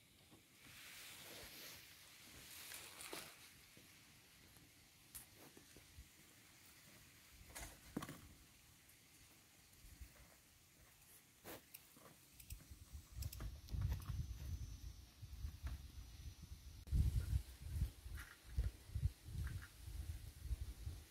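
Faint, scattered knocks and scrapes of a long-handled hoe worked in dry sandy soil while a water-pipe trench is dug. From about twelve seconds in, irregular low rumbling is louder than the digging.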